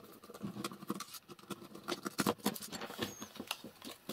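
Light, irregular clicks and scratching of a small screwdriver on the screws of a plastic WiFi smart socket, and of its plastic housing being handled as the circuit board is taken out.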